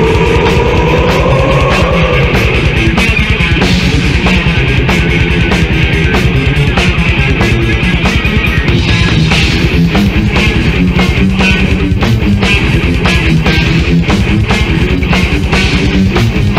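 Death/thrash metal: distorted guitars over very fast, dense drumming. A held note bends upward in the first couple of seconds.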